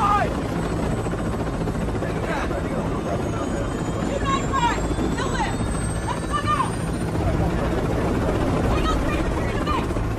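A steady, loud low mechanical rumble, like a helicopter or other large engine, with a faint high whine rising slowly through the middle. Indistinct voices come through now and then.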